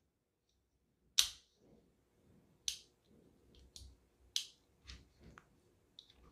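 Small metal clicks from a die-cast miniature 1911 model pistol being worked by hand at its slide lock: one sharp click about a second in, then several fainter clicks spread over the next few seconds.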